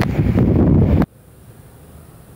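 Wind blowing on a phone's microphone, a loud, deep noise that stops abruptly about a second in where the video cuts; after that only a faint steady hiss.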